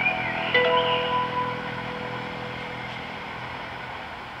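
Closing notes of a guitar-based karaoke backing track ringing out and fading in the first second or so, leaving a steady background hum.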